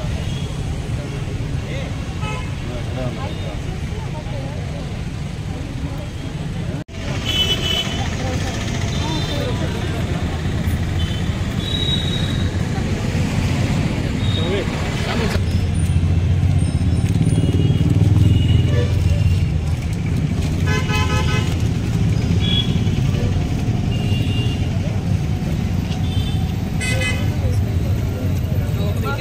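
Busy street ambience: road traffic with a steady low rumble, vehicle horns honking now and then, twice near the end, and people talking in the background.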